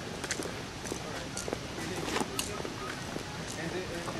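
Faint voices in the background over outdoor ambience, with a few light, irregular clicks.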